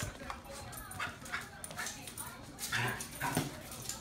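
A small dog giving a string of short whines and yips while playing, with the two loudest coming about three seconds in.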